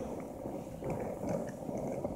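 Skateboard wheels rolling over a coarse, stony road surface, giving a steady gritty rumble.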